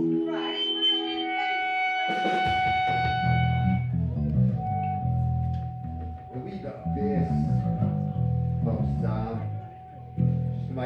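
Electric guitar and bass guitar sounding loose notes through amplifiers ahead of the first song: a chord rings out at the start, then low bass notes run under a single high note held for most of the time. A voice talks briefly near the end.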